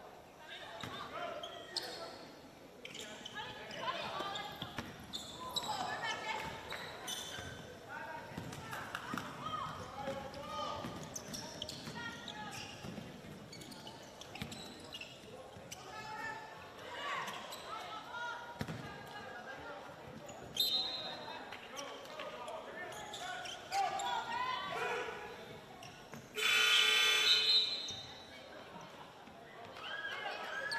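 Basketball game in a large gym: players' voices on the court and a ball bouncing, with a short high whistle about two-thirds of the way through. Near the end the scoreboard horn sounds once for about a second and a half, the loudest thing heard, calling a substitution.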